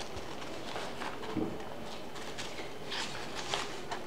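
Scissors cutting coloured paper: a few short, quiet snips with the paper rustling.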